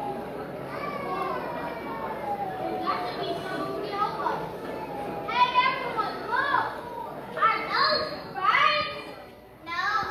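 Many children's voices talking and calling out over one another, with louder, higher cries in the second half.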